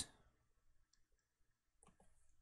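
Near silence with a few faint clicks from computer input. The clicks come about a second in, and there is a sharper one near the end.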